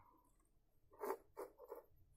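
Faint clicks and rubbing of small plastic multi-pin connectors being handled and pushed together, a few short sounds in the second half after a near-silent first second.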